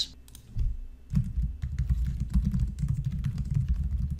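Typing on a computer keyboard: a quick, dense run of keystrokes starting about half a second in, with a low thudding under the clicks.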